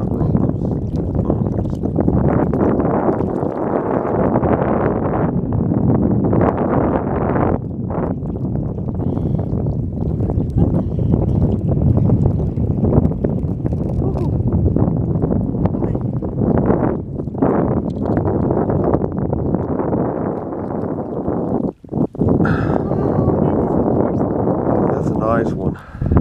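Wind buffeting the camera microphone: a loud, steady low rumble that drops out briefly near the end.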